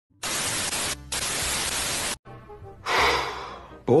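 TV static: a loud, even hiss that lasts about two seconds, dips briefly about a second in, and cuts off suddenly. Near the end comes a short breathy swell that fades away.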